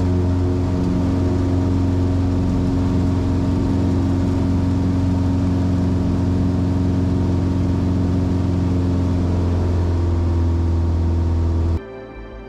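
Cessna 170B's 180-horsepower Lycoming O-360 engine and propeller running steadily at high power through a takeoff roll and lift-off, heard from inside the cockpit. The sound cuts off abruptly near the end.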